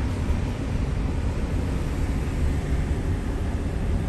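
Steady road noise of a car driving on a freeway, heard from inside the moving car: a low rumble with an even hiss of tyres and wind above it.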